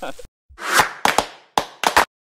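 A quick run of edited sound effects. A short burst of noise about half a second in is followed by several sharp hits and snappy bursts, packed closely together in the second half.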